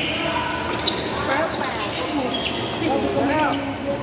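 A badminton rally in a reverberant sports hall: sharp smacks of rackets striking the shuttlecock, with squeaking shoes on the court floor. Chatter from other players runs underneath.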